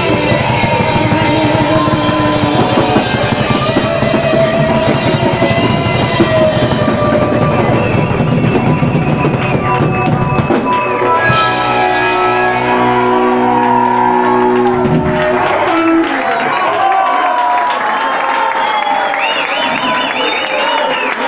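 Live rock band playing loud, drum kit and electric guitar; about eleven seconds in the band holds a final chord that rings out for a few seconds, and after it stops the crowd shouts and cheers.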